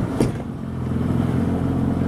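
Small boat's outboard motor running at low speed, a steady low drone that dips briefly about half a second in and then picks up again, with a brief knock just after the start.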